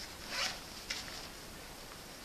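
Zipper on a nylon gear bag pulled in one short stroke about half a second in, followed by a light click.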